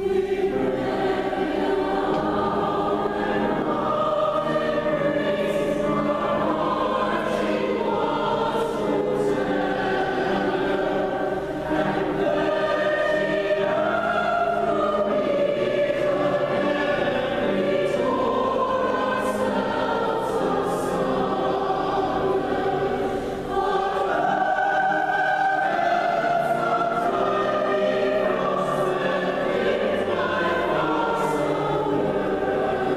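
Mixed choir of men's and women's voices singing a choral piece, coming in at full voice right at the start, with two short dips about twelve and twenty-three seconds in.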